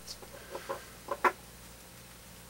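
A pet cockatoo giving a few short, clipped calls in quick succession, the loudest a little past a second in.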